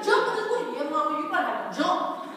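A woman speaking, in the animated voice of a live storyteller.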